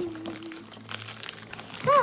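Plastic snack packaging crinkling and rustling, with small handling clicks, amid table-side snacking.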